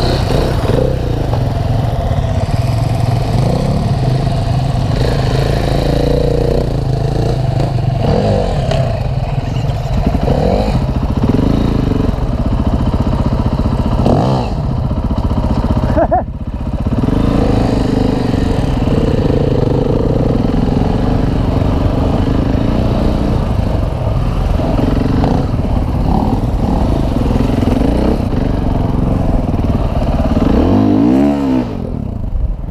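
Enduro motorcycle engines running at low speed, the nearest a single-cylinder four-stroke Husqvarna FE 501, with repeated throttle blips that rise and fall in pitch. There is a harder rev right at the end.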